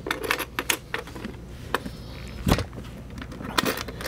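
Clicks and knocks of a small metal pistol lockbox being handled and its lid pressed down over a big pistol, the keys hanging in its lock jangling. There is one heavier thump about two and a half seconds in and a few more clicks near the end.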